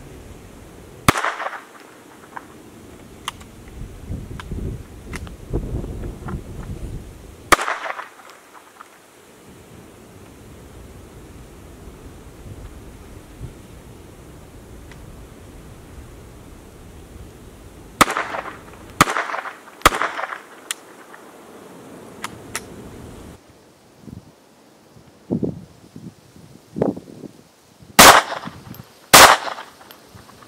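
Ruger Mark I .22 rimfire semi-automatic pistol firing about eight sharp single shots at irregular intervals: two pairs close together, a quick run of three or four, and long gaps in between. The somewhat neglected pistol had a few malfunctions on this magazine.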